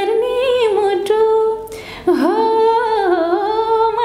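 A woman singing unaccompanied in long held notes that slide and waver between pitches. There is a brief break for breath just before two seconds in.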